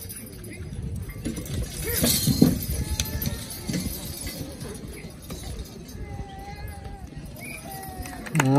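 A team of draft horses lunging into a pull: hooves striking the dirt and harness hardware jingling, with men's voices shouting at the horses, loudest about two seconds in.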